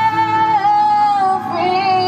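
A woman's voice singing a slow melody in long held notes over backing music, amplified through a PA speaker.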